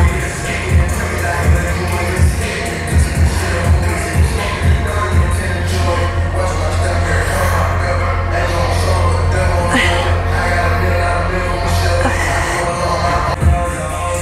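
Background music with heavy bass and a steady beat. The beat drops away for a few seconds midway to a held bass note.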